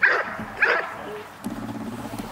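A Belgian Malinois barks twice, sharply, about half a second apart, then gives a short low whine.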